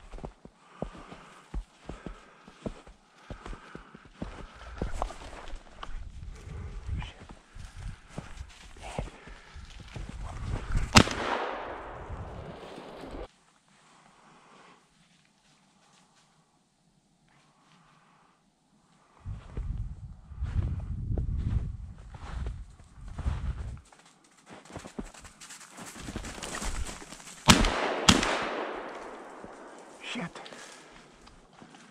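Footsteps crunching through snow and brush, broken by shotgun shots at flushing ruffed grouse that miss: one loud shot about eleven seconds in, then two shots close together near the end.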